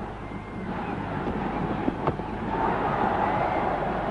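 Stadium crowd noise heard through a TV broadcast: a steady din that swells louder in the second half, with one sharp click about two seconds in.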